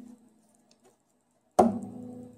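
Instrumental opening of a song: a struck chord fades away at the start, and a second chord is struck sharply near the end and rings on.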